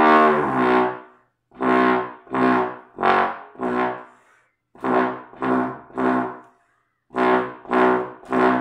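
Trombone playing false tones in its lowest register: one long held note, then short separate notes in groups of four, three and three. These bent-down notes around low B are not fully centred or solid.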